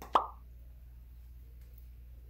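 A single sharp knock with a brief ringing tail, right at the start, then only a low steady hum.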